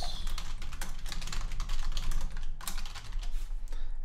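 Fast typing on a computer keyboard: many quick keystrokes in runs, typing out a street address, over a low steady hum.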